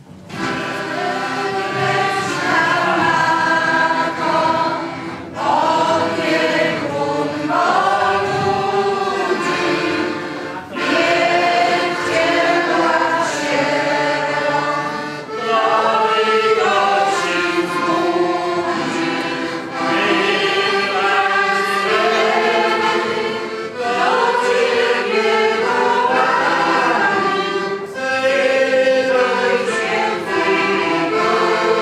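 A group of voices singing a slow religious song together, in phrases a few seconds long with brief breaks between them.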